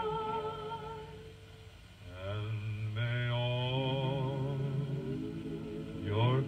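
A recorded song playing: sung notes held with vibrato over accompaniment. They fade about a second in, and a new phrase starts about two seconds in with notes sliding upward, then held.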